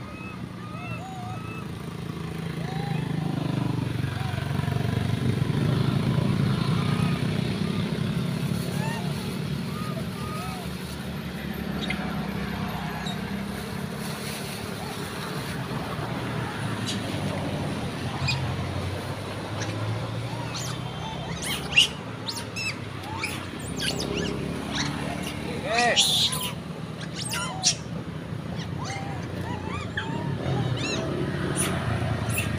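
Short, high squeaky calls from a troop of long-tailed macaques over the low rumble of road traffic, a passing vehicle swelling and fading in the first half. In the second half a few sharp clicks and rustles stand out, the loudest about two thirds of the way in.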